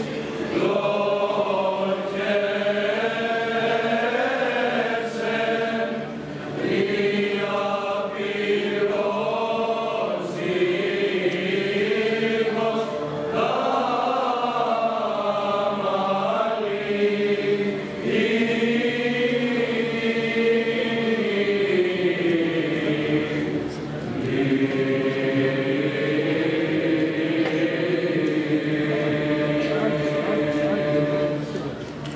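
Male choir of boys and young men singing together in long, sustained phrases, with brief breaks between phrases.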